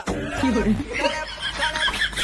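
A comic voice clip on the soundtrack: a voice slides down in pitch about half a second in, then quick, high-pitched laughter runs from about a second in, in a break between stretches of music.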